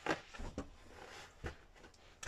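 Handling noise from foam cushions being fitted onto a sofa bench: rustling with a few soft knocks, the first and loudest just after the start and another near the middle.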